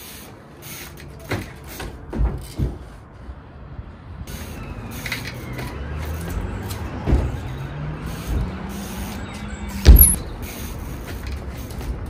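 Trials bike hopping and landing on wooden pallets and concrete: a string of knocks and thuds, the loudest about ten seconds in. Underneath, a passing road vehicle's engine hums, rising in pitch from about four seconds in and then holding steady.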